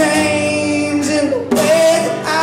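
Live acoustic music: a singer holding long notes over an acoustic guitar, with a short break about one and a half seconds in before the next held note.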